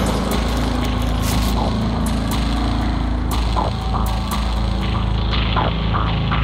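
A steady low droning hum runs throughout, with a few short higher sounds scattered over it.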